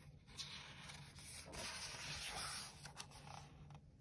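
A page of a hardcover picture book being turned: soft paper rubbing and rustling that lasts about three seconds.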